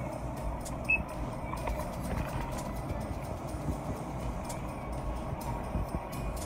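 Steady background hum and rumble with a single short, high electronic beep about a second in.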